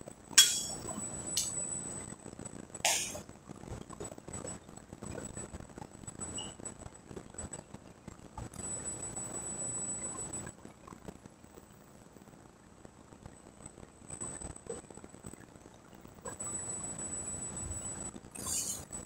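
Barbell loaded with bumper plates during a deadlift: a sharp metal clink about half a second in, then two more clanks of bar and plates within the next few seconds. After that, only quiet room sound from the gym.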